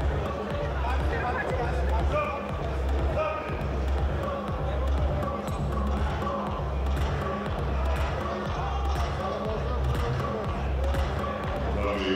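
Arena music with a heavy, steady bass beat, over the murmur of crowd voices in a hall.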